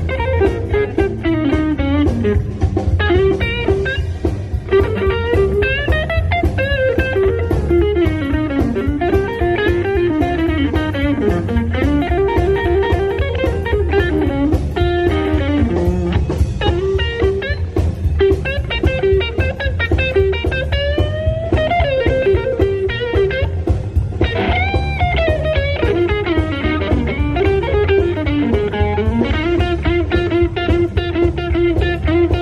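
Live blues band playing an instrumental passage: a semi-hollow electric guitar carries the lead, with notes that bend up and down in pitch, over drums and bass guitar.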